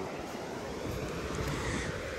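Steady rushing of wind and sea surf, with wind rumbling on the microphone.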